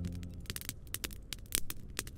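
Fire crackling with irregular sharp pops, while the last held chord of the song fades out in the first half second.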